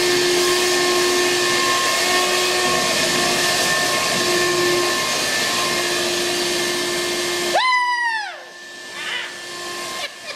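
Vacuum cleaner running steadily inside a car, then cutting out abruptly near the end. As it stops, a short, loud pitched sound rises briefly and then falls in pitch.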